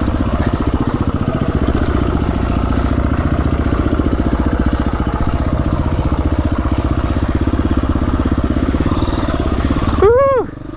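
Off-road dirt bike engine running steadily under the rider as it picks its way along rocky single track, close to the microphone, with even firing pulses and no big revs.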